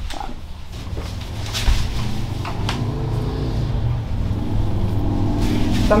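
A low, steady motor-like rumble that slowly grows louder, with a couple of faint knocks in the first half.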